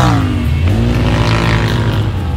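Side-by-side UTV engine running, its revs dropping right at the start as the throttle eases off, then running steadily at lower revs.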